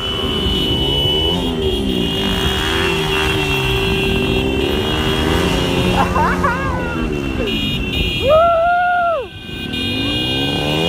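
Several motorcycle engines running as the bikes ride past, their pitch rising and falling as each one passes. About eight seconds in, a horn sounds once for about a second.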